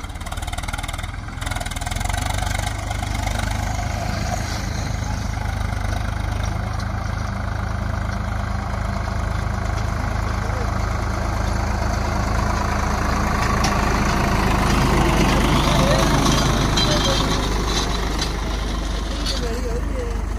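Swaraj 744 XT tractor's three-cylinder diesel engine working hard, pulling a heavily loaded trailer so that the front wheels lift off the road. A steady low rumble that grows louder as the tractor comes closer, loudest near the end.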